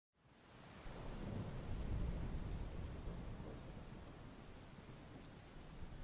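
Thunderstorm ambience: steady rain with scattered drops, and a deep rumble of thunder that fades in at the start, swells over the first two seconds, then slowly rolls away.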